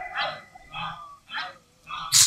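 Three short, quiet vocal sounds from a man at a microphone, about half a second apart, in a pause between sung lines.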